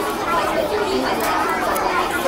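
Indistinct chatter of several people in a café, a steady babble of voices with no single clear speaker.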